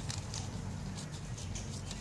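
Faint rustling of papers being handled, over a steady low background hum.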